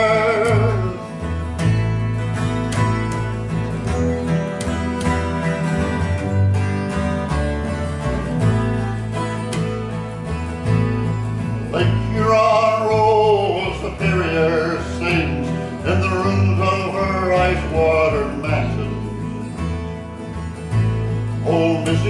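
Acoustic guitar and upright bass playing an instrumental break between sung verses, the bass plucking a new note about every two seconds.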